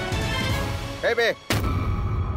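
Dramatic TV-serial background score with a sudden, loud boom-like hit about one and a half seconds in, followed by a low rumble.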